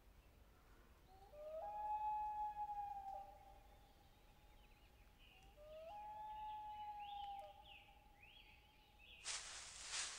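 Two faint, long howls, each rising briefly and then held at a steady pitch for about two seconds, a few seconds apart, with faint short chirps in between; a short burst of hissing noise comes near the end.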